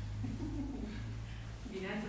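A low, faint voice murmuring, with a speech-like phrase near the end, over a steady low hum.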